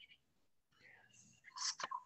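Near silence, then a soft whispered murmur of a voice starting about a second and a half in.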